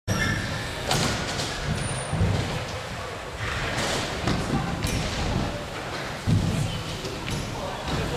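BMX bikes rolling over and landing on skatepark ramps: a series of dull thuds from tyres and frames hitting the ramp surfaces, the loudest about six seconds in, in an echoing indoor hall. Voices chatter in the background.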